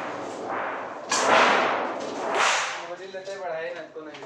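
Large steel sheets being handled and shifted: a series of loud, sharp-edged swishing, rattling noises, the loudest about a second in. A brief voice-like sound follows near the end.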